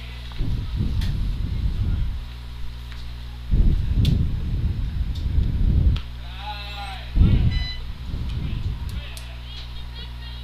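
Wind buffeting the microphone in three low gusts over a steady low hum, with a short distant voice calling out about six and a half seconds in.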